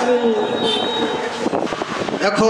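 A boy reciting the Quran in a melodic chant over a public-address microphone: a long held note falls and dies away about half a second in. After it comes an even background hiss with faint scattered sounds.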